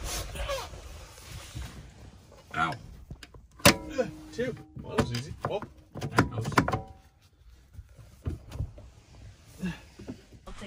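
Metal clicks and clacks from a 2000 Dodge Ram Wagon bench seat's floor latches being worked loose by hand, the loudest a sharp clack a little under four seconds in.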